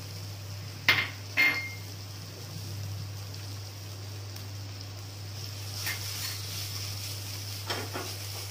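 A metal spoon knocks twice on a stainless steel kadai about a second in, the second knock with a brief ring, as pickle masala is tipped into the potato filling. A wooden spatula then stirs the filling softly in the pan.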